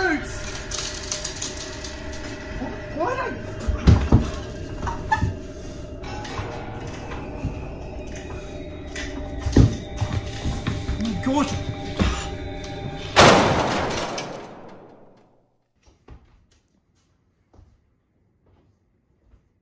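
Tense film score of sustained tones, broken by two heavy thuds and short wordless cries from a man. About 13 seconds in a loud rushing swell cuts in and fades away within two seconds, leaving near silence with a few soft knocks.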